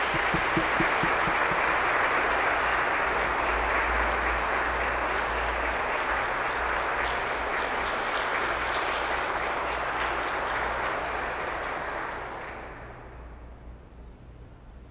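Audience applauding, echoing in a large stone cathedral, steady for about twelve seconds and then dying away near the end.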